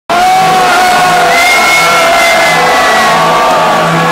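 Large arena crowd cheering and shouting over loud music, recorded at close range and loud throughout.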